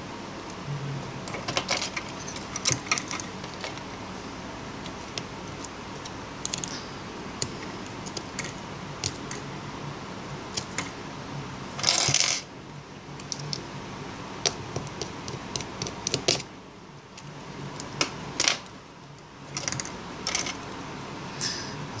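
Scattered small metallic clicks and taps of tweezers and phone parts while an opened iPhone 5 is worked on: its metal shield and display assembly are being lifted off and set down. A louder rustling noise comes about halfway through.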